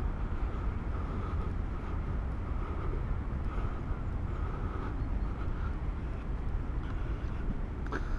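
Steady outdoor background noise: a continuous low rumble with a faint, unsteady murmur of distant activity above it, and no close sound standing out.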